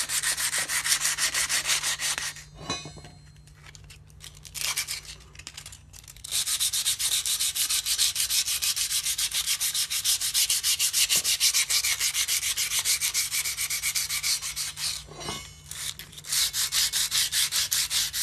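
Steel stabilizer bar being dry-sanded by hand with coarse 60-grit sandpaper: rapid back-and-forth scraping strokes. The strokes pause for a few seconds about two and a half seconds in and briefly near the end. The paper is knocking rust and gritty high points down to bare steel.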